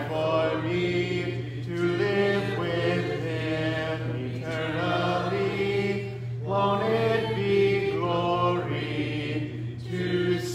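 A church congregation singing a hymn together a cappella, unaccompanied voices, with no instruments.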